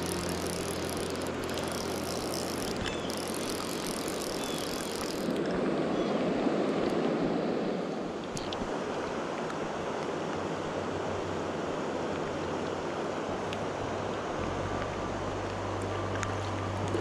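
Steady hiss of rain falling on the river and flowing water, swelling briefly about six to eight seconds in.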